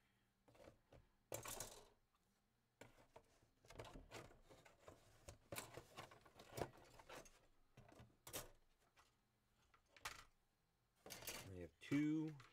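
Scattered rustles and light clicks of plastic model-kit sprues and parts being handled and sorted on a workbench, with a louder rustle near the end.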